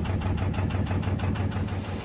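Narrowboat's diesel engine running steadily under way, an even low engine note.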